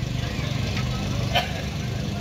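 A steady, low engine-like rumble with a fast, even pulse, and a single sharp click about one and a half seconds in.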